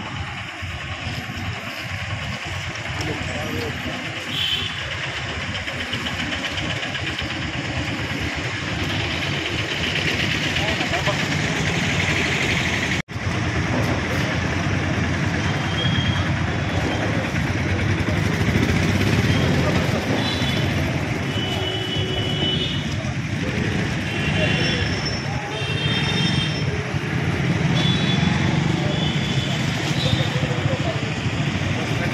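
Roadside street noise: traffic running past and people talking, with several short high-pitched tones in the last third.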